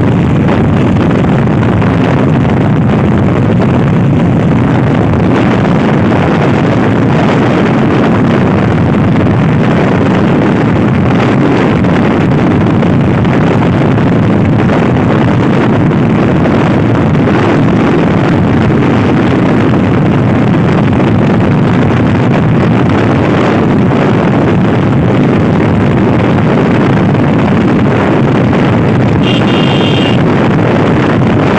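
TVS Apache RTR 160 4V single-cylinder motorcycle at full road speed, about 90 to over 100 km/h, its engine running under a heavy, steady rush of wind on the microphone.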